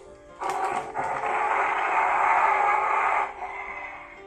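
Playmates 13-inch Kong figure's built-in electronic sound effect, set off by twisting its waist, playing through the toy's small speaker. It starts about half a second in, runs for nearly three seconds and cuts off sharply, and is quite noisy.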